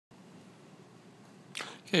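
Low room hiss, then a brief sharp rush of noise about one and a half seconds in, just before a man starts to speak.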